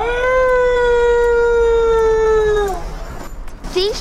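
A single long wolf-like howl: it rises at the onset, holds one steady pitch for about two and a half seconds, then falls away and stops.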